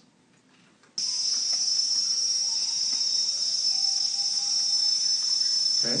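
A field recording of a jungle cicada chorus, cutting in abruptly about a second in as a dense, steady, high-pitched buzz that is really obnoxious in loudness. Faint, drawn-out lower tones sit underneath.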